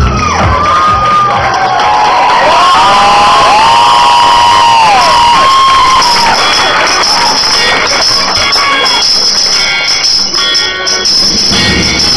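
An audience cheering and whooping, with several long rising-and-falling 'woo' calls overlapping in the first half. Music with a regular beat comes through faintly under the crowd in the second half.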